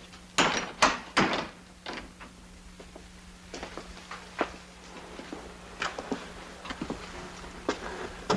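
A run of knocks and clunks: three loud ones in quick succession in the first second and a half, then lighter knocks scattered through the rest. A steady low hum runs underneath.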